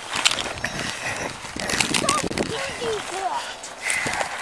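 Handling noise on a body-worn camera during a struggle: clothing rubbing and knocking against the microphone, with scuffing steps. A few brief, faint voice fragments come through from about halfway in.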